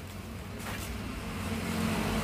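A motorbike engine running on the street, its low hum growing louder toward the end as it approaches.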